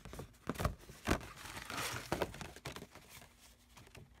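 A creased sheet of paper rustling and crinkling as it is handled, in several short irregular bursts.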